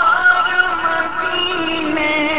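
Male naat reciter singing an Urdu naat, holding long sustained notes with a slight waver in pitch.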